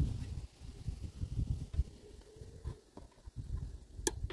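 Irregular low handling noise of a plastic-boxed charge controller being held and turned, with a few faint small knocks as a metal tool is put to its DIP switches.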